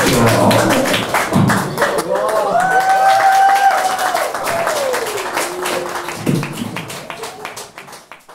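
Beatboxing into a microphone that ends after about two seconds, followed by audience clapping and one long held vocal call that slides down in pitch; the sound fades out near the end.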